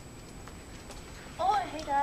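Faint footsteps clicking on a hard hallway floor, then a girl's high voice exclaiming with a sliding pitch about a second and a half in.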